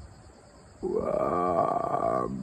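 A man's drawn-out hesitation sound, a long wavering "uhh", starting just under a second in and lasting about a second and a half.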